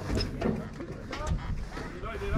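Indistinct voices, with a few light clicks and knocks.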